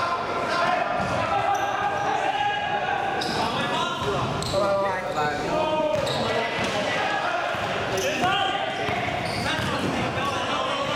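Basketball bouncing on an indoor court floor as it is dribbled, echoing in a large sports hall, with players' voices calling out throughout.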